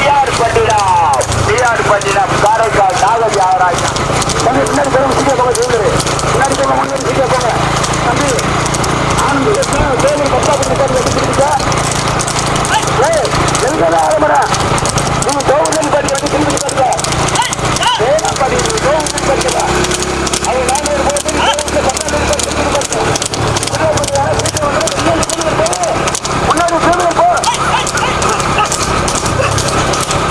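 Hooves of trotting horses clip-clopping on a tarmac road as they pull two-wheeled rekla racing carts, under continuous shouting voices.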